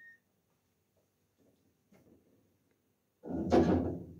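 Refrigerator being handled with its door open: a few faint knocks, then a louder clatter lasting under a second about three seconds in.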